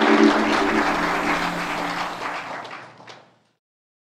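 Audience applause, fading away over about three seconds and cut off suddenly.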